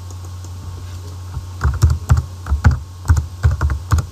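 Computer keyboard being typed on: a quick run of about a dozen keystrokes starting about a second and a half in, as a word is entered into a text field. A steady low hum lies under it throughout.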